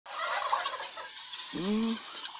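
Domestic guineafowl calling in a rapid run of harsh, repeated cries, followed by a lower, drawn-out sound near the end.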